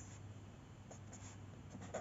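Felt-tip pen writing on paper: faint scratching strokes of the pen tip across the sheet.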